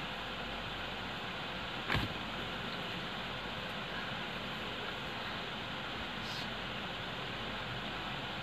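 Steady hiss of room noise, with a single sharp knock about two seconds in.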